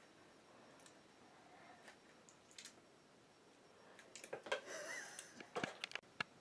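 Mostly quiet room tone with a few faint ticks, then a quick run of light clicks and faint rustling in the last two seconds, as from kitchen things being handled.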